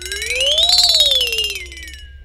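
Comic sound effect on a film soundtrack: a single buzzy, whistle-like tone that glides up in pitch, peaks about a second in, then slides back down.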